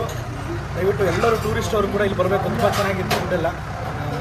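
A man talking, with other voices, over a steady low hum; a single sharp click about three seconds in.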